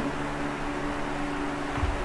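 Steady low hum with a hiss: the background noise of a running motor, such as a fan.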